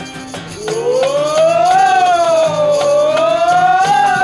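Live acoustic folk band music with fiddle, guitar and tambourine. It is led by one long siren-like wailing note that slides up, dips in the middle and climbs again.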